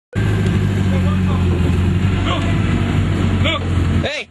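A car engine running steadily with a loud low rumble, with a few faint voices over it.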